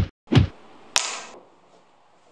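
Two dull thumps in quick succession, each dropping in pitch. About a second in comes a single sharp crack with a short hiss that fades away.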